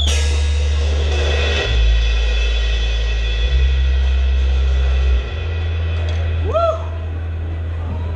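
A live rock band lets a song ring out: a cymbal crash at the start rings out over deep held bass notes that step to a new pitch every second or two. A short rising whoop comes near the end.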